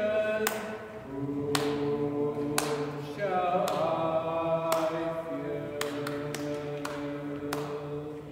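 Male cantor singing a slow psalm melody, with other voices joining him, in a reverberant church. The notes are held and change pitch about once a second, and the singing dies away in the room's echo at the end.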